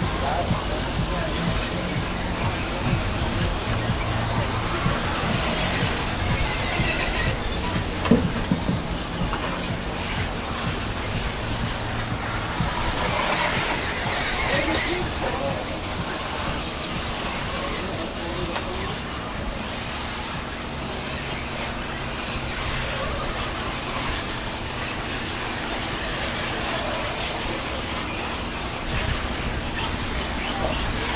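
Busy race-track ambience: background voices and music over a steady hum, with radio-controlled cars running on the dirt track. A single sharp knock about eight seconds in.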